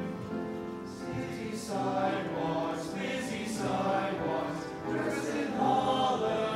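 A men's choir of teenage voices singing a song in harmony, accompanied by an upright piano. The singing eases about a second in, and a new phrase begins shortly after.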